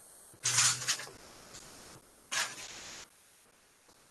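Sheets of paper being handled and turned, rustling twice: a loud rustle about half a second in and a shorter one just past two seconds.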